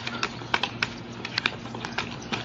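Irregular sharp clicks and taps from a BMX bike being balanced on one wheel, a few a second, over a faint steady low hum.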